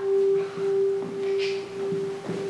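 A single steady, pure note held on a keyboard, with faint overtones and no change in pitch.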